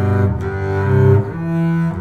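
Solo double bass played with the bow, holding low sustained notes and moving to a new note twice.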